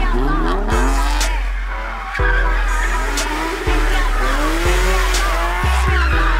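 A Nissan 350Z's rear tyres squeal as it does a smoky burnout slide and its engine note rises and falls under the throttle. A hip-hop track with a deep, pulsing bass line plays over it.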